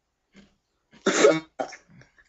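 A person coughing: one hard cough about a second in, then a shorter, weaker one just after.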